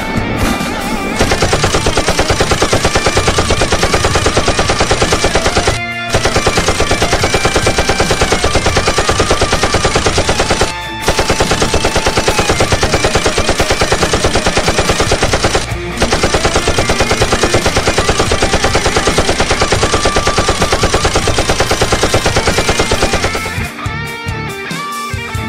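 Automatic assault-rifle fire sound effect: long strings of rapid shots, broken by short pauses about 6, 11 and 16 seconds in, with background music underneath.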